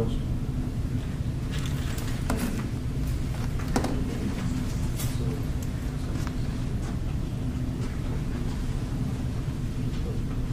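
Steady low room rumble with a few faint knocks and rustles while a table microphone is shifted into position for a speaker; there is no stick mic.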